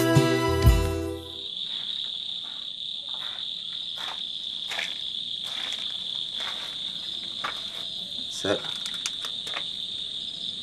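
Crickets chirring steadily in a high, continuous trill, with a few soft knocks. Closing chords of theme music die away about a second in.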